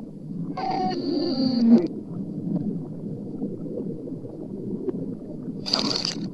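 Necrophonic sound-bank audio played in reverse: a continuous jumble of chopped, garbled voice-like fragments. A longer pitched, wavering sound rises out of it from about half a second to just under two seconds in, loudest at its end, and a brief shrill burst comes near the end.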